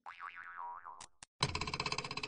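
Cartoon 'boing' sound effect: a springy, wobbling tone that swings up and down in pitch for about a second, then two short clicks, and about a second and a half in a buzzing, rapidly pulsing effect starts.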